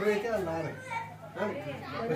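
Voices talking in the background, children's voices among them.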